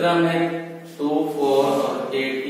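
A man's voice in two long, drawn-out, sing-song syllables, each held at a nearly steady pitch, the second starting about a second in.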